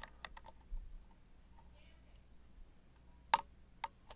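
Small metallic clicks of a lock pick and tension wrench moving in the keyway of a Corbin Russwin Emhart mortise cylinder: a few light ticks in the first second, then one sharp click and a smaller one near the end.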